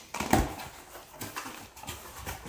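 Cardboard box being opened by hand: a sharp tearing pull on the flaps about a third of a second in, then scattered rustling and creaking of cardboard and the plastic wrapping inside.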